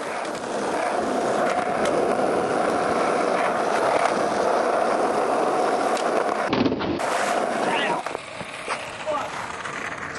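Skateboard wheels rolling steadily over rough concrete for about six seconds, then a break and several sharp knocks and clatters as the skater bails on a set of concrete steps and the board and rider hit the ground.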